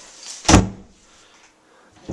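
A door being shut: one loud, sharp impact about half a second in.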